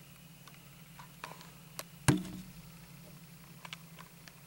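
A single sharp knock about two seconds in, with a short low ring after it, among faint scattered ticks over a steady low hum.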